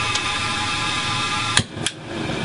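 High-energy spark igniter of a gas pilot burner buzzing steadily as the water-soaked pilot is fired. The buzz stops about a second and a half in with two sharp clicks.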